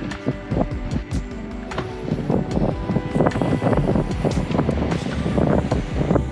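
Background music made of many short, quickly repeated notes, over a steady low rumble.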